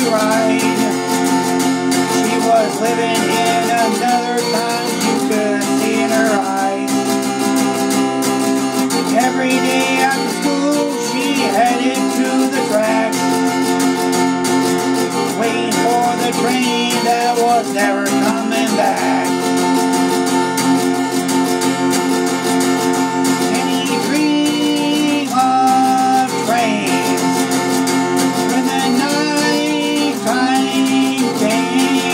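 Acoustic guitar strummed and picked in a slow country song, with a man singing over it.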